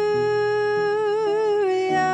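Worship song: a singer holds one long, slightly wavering note over a steady instrumental accompaniment, the chord changing near the end.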